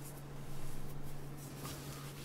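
Steady low electrical hum, with a brief faint rustle about half a second in.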